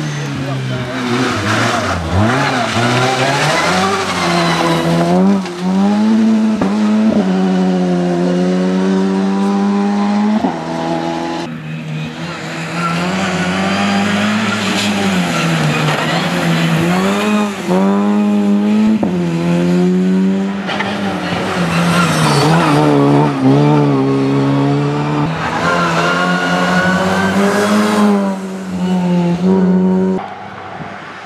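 Opel Adam rally car's engine revving hard on the stage, its pitch climbing through each gear and dropping again on shifts and braking, many times over. The sound changes abruptly about a third of the way in, where a new pass begins.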